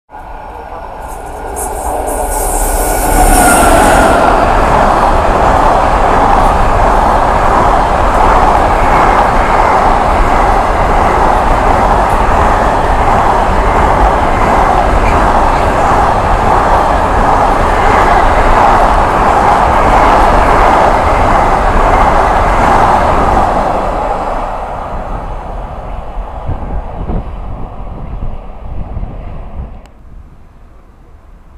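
Intermodal container freight train passing at speed close by: a loud, steady rumble of wagon wheels on the rails that builds over the first few seconds and fades away over the last several.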